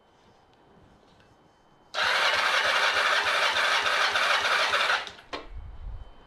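Kawasaki ZR-7's electric starter cranking its air-cooled inline-four engine for a compression test, with an even pulsing beat, starting about two seconds in and cutting off abruptly after about three seconds. The gauge then reads 12 on cylinder 3, a sign that the cylinder compresses well.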